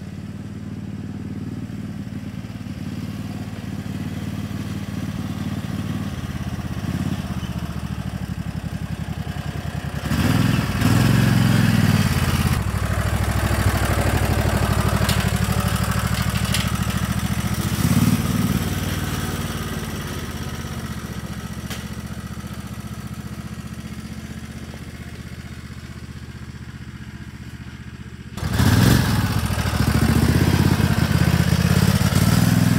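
American Landmaster Trail Wagon UTV engine running steadily as the vehicle drives along, pulling a log on a cargo carrier. It grows louder about ten seconds in and again near the end as it comes close.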